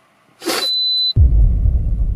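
Car espresso maker beeping once, a single high steady tone about half a second long, signalling that its brew cycle has finished; a short hiss comes just before it. A loud low rumble starts abruptly about a second in.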